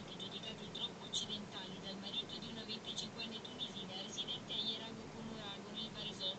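Cicadas chirping in a rapid, uneven run of short high pulses, over a faint low steady hum.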